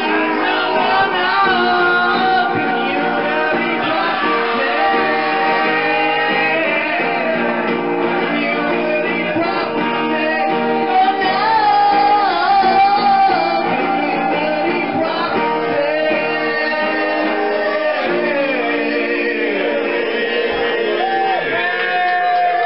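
Live acoustic guitar strumming with several voices singing together at the microphones, a loud amateur jam with some shouting.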